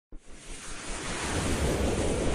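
Whoosh sound effect of an animated logo intro: a swell of rushing noise that starts from silence and grows steadily louder.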